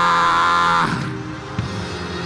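A man's loud cry held on one pitch into a microphone, breaking off about a second in, over soft sustained background music that carries on.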